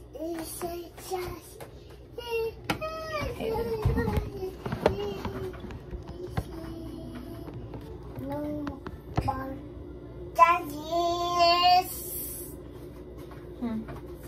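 A young child singing and vocalising in a high voice, loudest about three seconds in and again near eleven seconds.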